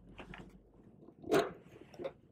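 Rubber balloon being worked over the mouth of a test tube: faint rubbing and handling, then one short, louder rub or snap of the rubber about a second and a half in.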